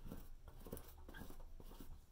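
Paintbrush spreading paint over a rough-textured canvas: a run of short, faint, irregular scratchy strokes.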